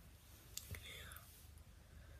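Near silence: low steady room hum, with a couple of faint clicks and a soft breathy sound just under a second in.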